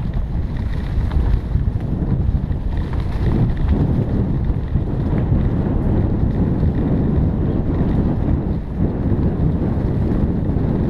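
Wind buffeting the microphone of a bike-mounted camera as a mountain bike rides dirt singletrack, a loud, steady, low rumble that wavers throughout.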